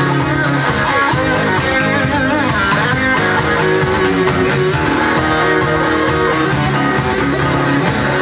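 Live rock band playing: electric and acoustic guitars, bass guitar and drum kit with a steady cymbal beat.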